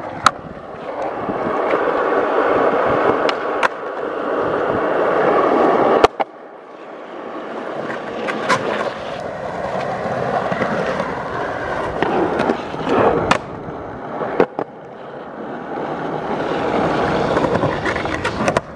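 Skateboard wheels rolling over concrete, the rolling noise swelling and fading over several long passes. Sharp clacks from the board cut in now and then, the loudest about six seconds in, followed by a short quieter stretch.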